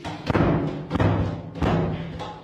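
Several heavy, booming thumps in quick succession, each followed by a brief low ringing.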